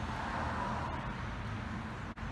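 Steady low background noise: an even hiss over a low hum, with no distinct events.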